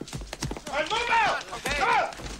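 Men letting out wordless shouts, two rising-and-falling yells, one about a second in and one near the end, over the clatter of hurried footsteps on a hard floor.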